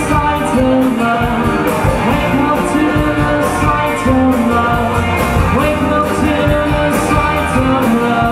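A live rock band playing: strummed acoustic guitar, electric guitar and a drum kit keeping a steady beat, with a voice singing over it.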